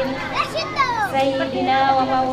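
A woman singing in Arabic into a microphone, holding long steady notes. A child's high voice cuts in briefly about half a second in with quick falling calls.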